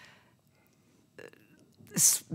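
A quiet pause between speakers, with faint breath noise, a short throaty vocal sound about a second in, and an intake of breath just before speech starts again.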